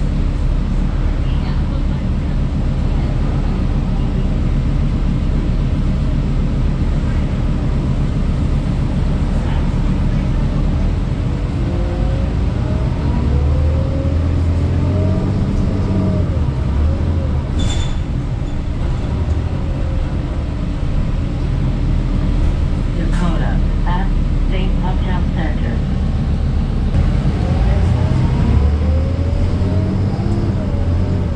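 Inside a 2008 New Flyer D40LFR city bus under way: the Cummins ISL diesel runs with a steady low drone. Partway through and again near the end, a whine rises and falls as the bus changes speed.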